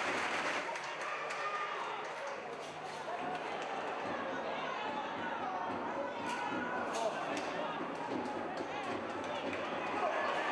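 Stadium applause fading within the first second, then a man's voice talking over the ground's steady background noise, with a couple of sharp knocks near the middle.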